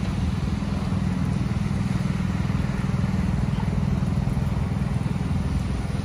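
An engine running steadily with a low, even hum, over a steady background hiss.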